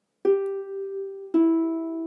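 Two harp strings plucked one after the other, G and then the E below it, the start of a descending C major triad; each note rings on, the second sounding over the first.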